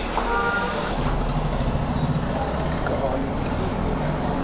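Steady low background hum with faint voices in the distance. No clear single sound source stands out.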